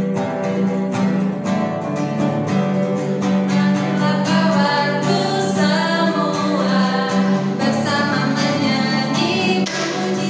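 An Indonesian children's praise song, voices singing the words over an instrumental backing with a steady beat.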